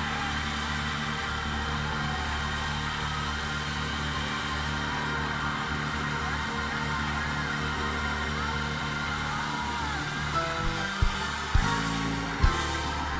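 Organ playing sustained chords over steady held bass notes, with a few faint wavering vocal lines in the middle. A few sharp knocks come near the end.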